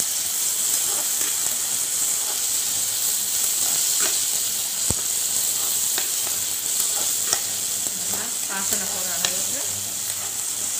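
Chopped onions, tomatoes and green chillies sizzling in oil in a non-stick frying pan, stirred with a spatula that clicks and scrapes against the pan now and then.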